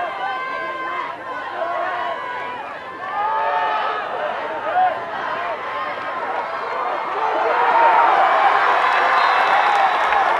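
Football crowd in the stands shouting and calling during a play, swelling into louder cheering about seven seconds in as the ball carrier breaks into the open. A brief louder burst stands out near the middle.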